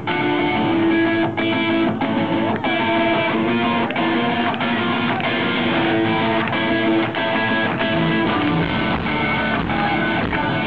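Live rock band playing the opening of a song, electric guitars strumming loud and continuously.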